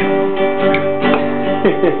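Acoustic guitar being played, its chords ringing steadily.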